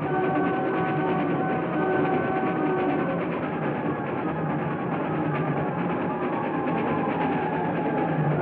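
Steady rattling run of a moving train, mixed with dramatic film-score music that holds sustained notes for the first few seconds.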